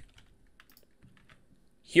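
Typing on a computer keyboard: a few faint, scattered keystrokes.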